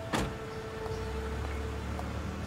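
A car door slams shut once just after the start, followed by a low steady rumble of the taxi's engine, with soft sustained music notes underneath.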